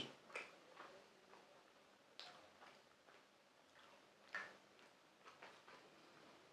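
Faint, scattered mouth clicks and smacks of a person chewing a cheesy paneer wrap, a few soft ticks spread over several seconds with near quiet between them.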